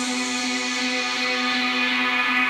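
Background electronic music: sustained, held synthesizer chords with no clear beat.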